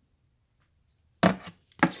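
Near silence, then a little over a second in a short scraping rub of hands handling the revolver and camera close to the microphone, with a voice starting to speak at the very end.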